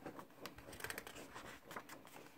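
Faint rustling and light clicks of a hardcover picture book's paper pages being handled and turned, busiest a little after half a second in.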